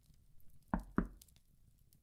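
Two knocks on a door in quick succession, a little under a second in.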